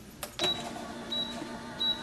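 Small electric machine motor running at a steady pitch, with a short high tone repeating about every 0.7 s, cutting off suddenly near the end.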